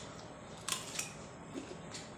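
Crisp crunches of a bite of raw cucumber being chewed, two sharp crunches close together about two-thirds of the way into the first second.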